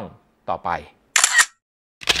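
A camera-shutter-like editing sound effect: one short, bright, noisy burst a little over a second in, marking the transition to a title card.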